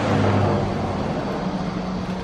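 Street traffic: a motor vehicle running close by, a low steady engine hum over a hiss of road noise, the deepest part of the hum fading away a little past halfway.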